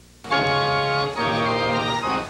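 Organ music: after a faint hiss, held organ chords start about a quarter second in and change roughly once a second.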